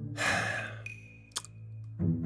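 A breathy mouth exhale, like a sigh, in the first second, then a single small click about halfway through as a clear plastic aligner is pressed onto the teeth.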